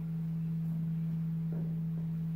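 A steady low hum, a single pure tone held without change, with a faint click about one and a half seconds in.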